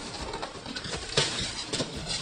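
Clear plastic wrapping on a cardboard box crinkling and rustling under a man's hands, with a couple of sharper crackles.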